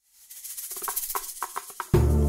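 Opening of a Turkish ilahi track: hand percussion with a rattling, shaker-like sound strikes in a quick rhythm of about five strokes a second, growing louder from silence. Near the end the full instrumental accompaniment comes in with a deep, steady bass.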